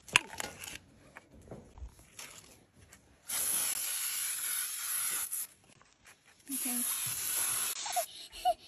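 Spray sunscreen hissing out in two long sprays, the first about two seconds, then after a short pause another of about a second and a half.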